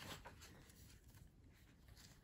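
Near silence: faint room tone, with a soft brief rustle right at the start.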